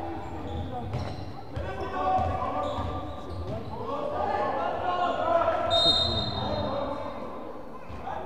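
Basketball bouncing on a hardwood gym floor amid spectators' shouting in a large hall, with a referee's whistle blown shortly before six seconds in and trailing off.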